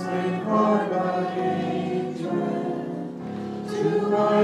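A group of voices singing a hymn together, holding long notes.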